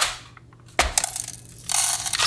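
A knock, then whole coffee beans poured into a small cup on a kitchen scale, a clattering rattle that is loudest near the end.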